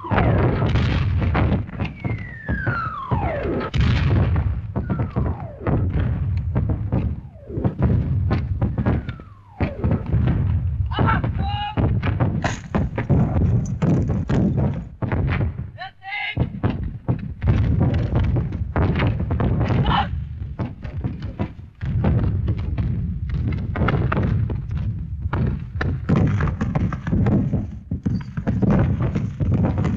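A battle soundtrack from an old war film: artillery shells whistle in and explode amid a continuous din of gunfire. A shell's whistle falls steeply in pitch a couple of seconds in, and the shots and blasts come thick and fast throughout.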